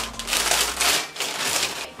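Paper wrapping crinkling and tearing in uneven bursts as a wrapped plate is unpacked by hand.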